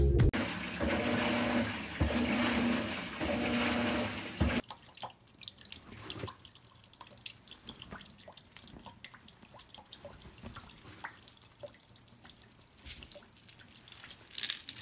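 Water pouring into a Maytag top-load washing machine's tub, a loud steady rush that cuts off suddenly about four and a half seconds in. Faint drips and small splashes in the tub follow.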